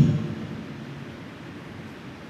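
Room tone in a large hall: a steady low hiss, with the reverberation of the last spoken word dying away just at the start.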